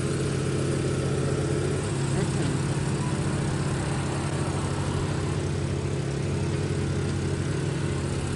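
A car engine idling steadily, a low even hum.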